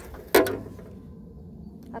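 Sheet-metal toolbox lid swung open with a single clank about a third of a second in, ringing briefly.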